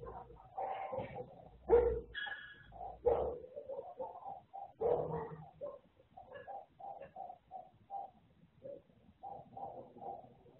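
Animal calls: many short calls repeating all through, with three louder ones about two, three and five seconds in.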